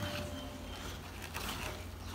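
Faint rustling and scraping of cardboard egg-crate sheets being lifted and shifted in a plastic bin, over a steady low hum.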